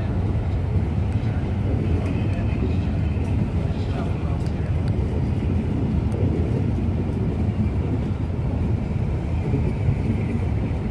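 Passenger train's coaches rolling slowly past along the platform: a steady, loud low rumble with no sudden events.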